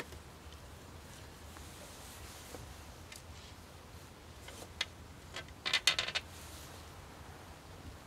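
A wooden stick being twisted in a tight cord loop, windlass-style, to clamp a split-log vise: a few faint creaks and clicks, then a short burst of crackling about six seconds in.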